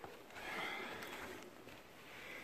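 Faint rustling and shuffling from someone walking across carpet with the camera in hand, with a brief click right at the start.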